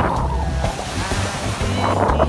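Small waves washing in over a shallow reef edge, the rush of surf swelling from about a third of the way in.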